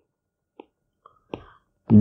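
A quiet pause in speech holding a few faint, short clicks, the clearest just over a second in; a man's voice starts again right at the end.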